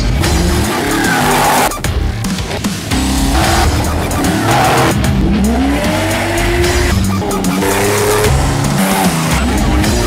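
Off-road race car engines revving, the pitch rising and falling several times, over a music soundtrack.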